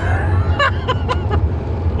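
Steady low road and tyre rumble inside the cabin of a Tesla-motor-powered VW Beetle cruising at speed, with short bursts of men's laughter and chatter in the first second.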